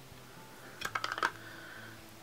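Makeup products and brushes being handled and set down: a quick cluster of light clicks and taps about a second in, over a faint steady hum.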